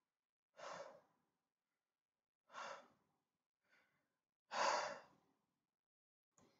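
A man sighing: three heavy breaths out about two seconds apart, the last one loudest, with a fainter breath between the second and third.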